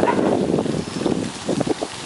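Wind buffeting the microphone: an irregular, loud rumble with no steady rhythm.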